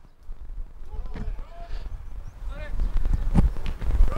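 Pitch-side sound of a football match: faint shouts from players over a low rumble, with a dull thump about a second in and a louder one a little before the end.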